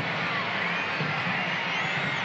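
Steady din of a stadium crowd at a soccer match, with a few faint shouts or whistles rising out of it.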